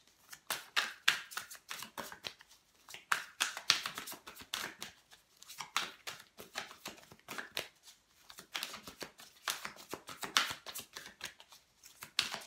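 A deck of tarot cards being shuffled by hand: a run of quick, irregular papery flicks and taps, coming in clusters with short pauses between.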